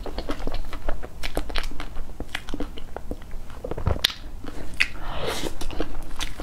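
Close-miked chewing of soft cream cake: a steady run of small wet mouth clicks, with a couple of louder noises about four and five seconds in.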